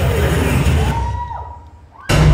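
A hissing, noisy swell in a dance-routine soundtrack played over the hall's speakers, fading away over about two seconds, with a faint whistle-like tone that rises and holds briefly about halfway through.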